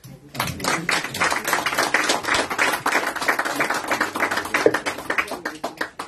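Small audience and panel applauding with many hands clapping. It starts about a third of a second in and thins out near the end.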